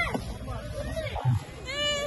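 A person's high-pitched squeal near the end, rising and falling once, among faint voices, with a short dull thump a little over a second in.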